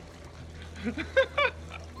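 A woman laughing in a few short bursts about a second in, over a steady low hum.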